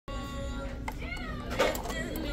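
Background music with steady held tones. About a second in there is a brief wavering cry, and near the end a short rustling clatter.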